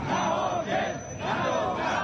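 Crowd of protesting men chanting slogans together in loud phrases, with a short break about a second in.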